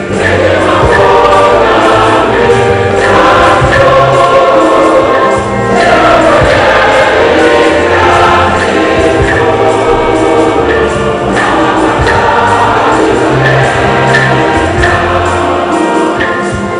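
Church choir singing a hymn in full voice, with instrumental accompaniment carrying a steady low bass line.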